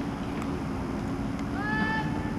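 A single drawn-out shouted drill command from a cadet, starting about one and a half seconds in. It rises briefly, then holds one pitch, over a steady low hum.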